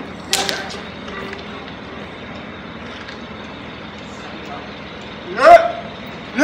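Outdoor background noise with a sharp knock just after the start. Near the end comes a loud shout that rises in pitch.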